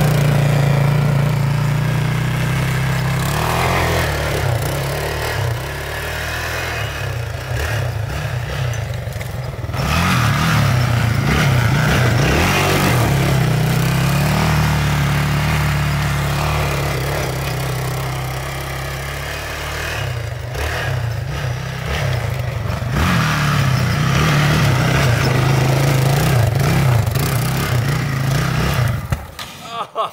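Four-wheeler (ATV) engine running, its note rising and falling as it is throttled up and eased off several times. It drops away about a second before the end.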